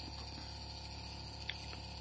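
Small DC motor with a shaft encoder running steadily at constant speed, a faint steady hum, with one small click about one and a half seconds in.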